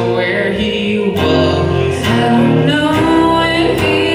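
Live performance of a country song: an acoustic-electric guitar played under sung vocals.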